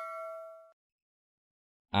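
Bell-like chime sound effect ringing out on one note with overtones, fading and then cutting off abruptly less than a second in.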